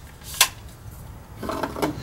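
A single sharp click a little under half a second in, then a couple of fainter clicks near the end, from an AR-15 rifle being handled on the shooting bench.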